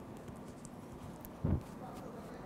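A single dull low thump about one and a half seconds in, over a steady background hiss with a few faint ticks.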